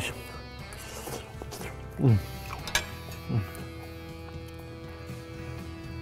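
Soft background music of sustained held chords. Over it, a man hums appreciative "mm" sounds while eating, twice, about two and three and a half seconds in, each falling in pitch.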